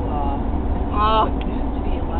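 Steady low road rumble of a car heard from inside the cabin, with two short vocal sounds from a girl, one just after the start and one about a second in.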